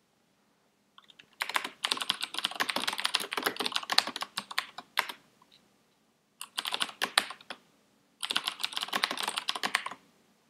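Computer keyboard typing in three quick runs of keystrokes separated by short pauses.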